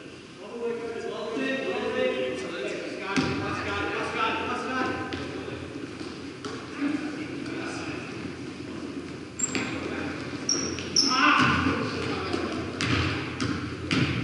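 Basketball bouncing and thudding on a hardwood gym floor during play, with a few short high sneaker squeaks about nine to eleven seconds in, all echoing in the large gym.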